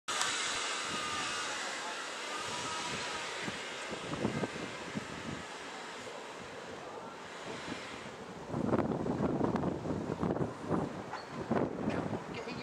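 Wind buffeting the microphone in irregular gusts over the last few seconds. Before that, a broad rushing noise slowly fades over the first seven seconds.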